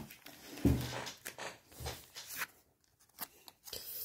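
Hands handling trading cards and plastic: a string of short, irregular crinkles and rustles.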